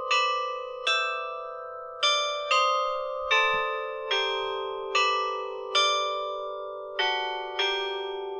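Tuned chime bells playing a slow melody, about one struck note a second, each note left ringing into the next, the tune stepping lower toward the end.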